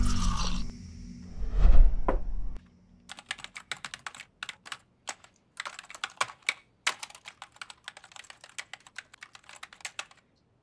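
Typing on a laptop keyboard: quick, irregular key clicks from about three seconds in. Before that, two loud low thuds.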